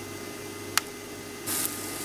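Thin egg crepe batter sizzling softly in a frying pan greased with vegetable oil. The hiss grows louder about one and a half seconds in, with a single light click before that.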